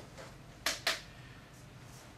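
Two sharp plastic clicks about a quarter second apart as the dissolved oxygen meter's probe is handled.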